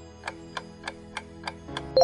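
Countdown-timer ticking sound effect: six quick, even ticks, about three a second, over a soft held music chord.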